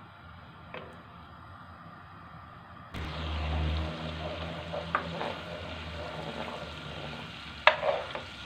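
Butter and olive oil heating in a nonstick pan, faint at first, then sizzling from about three seconds in while a wooden spoon stirs it. A few sharp knocks of the spoon against the pan come in the second half, the loudest near the end.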